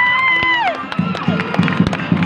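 Audience cheering and clapping, led by one long high-pitched shout that rises, holds for about a second and falls, over background music.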